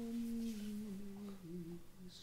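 A soft, slow hummed melody of low sustained notes, each held for about half a second and stepping down in pitch.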